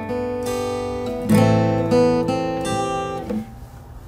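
Steel-string acoustic guitar picked through chords, single notes ringing over one another with new notes coming in every second or less. The notes die away shortly before the end.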